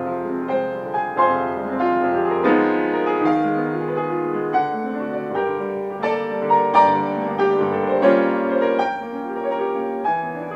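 Steinway & Sons grand piano played solo in a classical piece: a continuous, fast stream of notes over chords, with louder accented notes in the second half.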